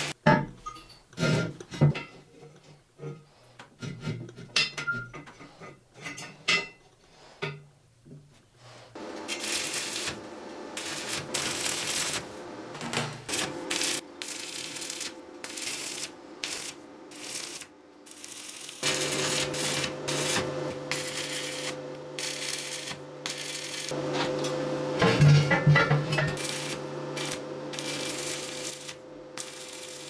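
Stick (MMA) arc welding on square steel tube: scattered short crackles and sharp snaps for the first several seconds as the arc is struck, then a steady sizzling crackle of a running weld bead, briefly breaking a little past halfway, over a faint steady hum.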